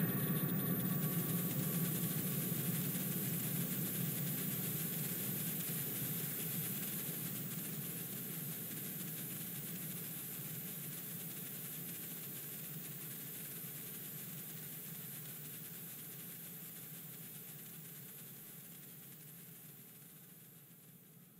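Analog modular synthesizer drone: a low, dense, noisy hum with a hiss above it, slowly and steadily fading out.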